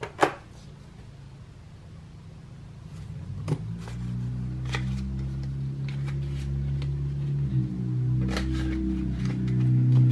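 Soft background music whose low, sustained tones fade in from about three seconds in, over light taps and rustles of paper bills and cash envelopes being handled. A sharp tap just after the start is the loudest sound.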